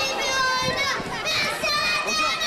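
Many young children's voices at once, high-pitched and overlapping.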